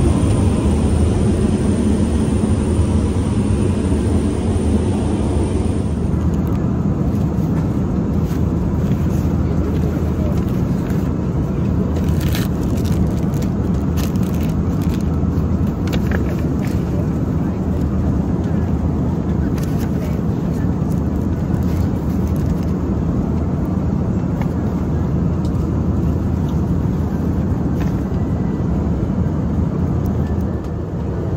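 Steady cabin noise of a jet airliner in flight: a loud low rumble of engines and airflow. For the first six seconds a faint high steady whine sits over it. Around the middle come a few short clicks of things being handled.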